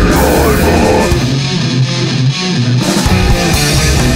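Brutal death metal band playing live, with distorted guitars, bass and drums. About a second in, the low end drops away for under two seconds, leaving mainly guitar, before the full band comes back in.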